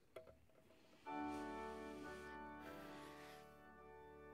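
Church organ starts a sustained full chord about a second in, after a few faint clicks; the held tones do not die away. It is the opening of the introduction to the closing hymn.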